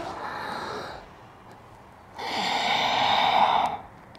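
A woman breathing audibly through the nose during a yoga breathing cycle. A faint breath trails off in the first second. After a short pause comes a louder, steady exhale lasting about a second and a half as she rounds her back.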